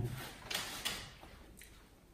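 A person breathing out in a short hiss while tasting a sip of cider, with a couple of small mouth clicks, about half a second in.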